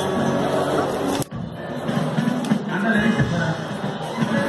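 Live band playing amplified dance music, with guitars and drums. About a second in there is a sharp click and the sound drops out for a moment before the music carries on.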